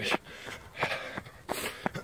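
A jogger breathing hard while running: a few short, sharp breaths through nose and mouth.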